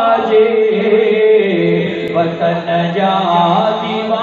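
A man singing a Sindhi naat into a microphone, in long held notes that slide and step in pitch.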